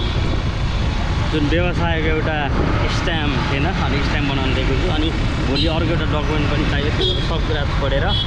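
A man talking, with a steady low rumble underneath.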